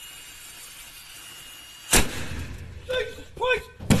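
A drill running faintly in a 100 lb propane cylinder, then a sudden loud bang about two seconds in, a prank meant to scare the man drilling. Two short startled yells follow, and another bang comes near the end.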